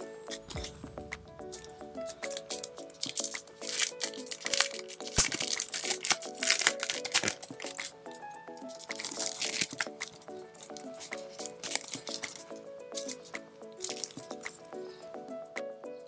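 A thin clear plastic sleeve crinkling and rustling in several flurries as a card packet is handled and a card is slid out of it. Light background music plays steadily underneath.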